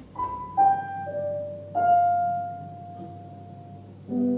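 Korg C1 Air digital piano playing a slow line of single notes: three falling notes in the first second or so, then a fourth, slightly higher note held for about two seconds as it fades.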